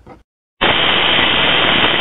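Loud TV-static hiss, an even rushing noise that starts suddenly about half a second in and cuts off abruptly.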